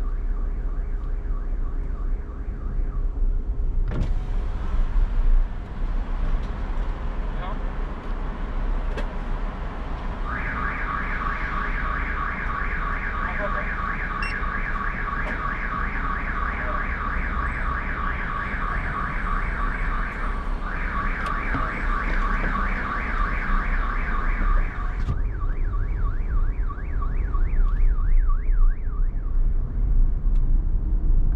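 A car alarm's rapid warbling electronic tone, repeating over and over. It is faint at first, loud from about ten seconds in, and fades again near the end. Underneath runs the steady rumble of road and engine noise from the car being driven.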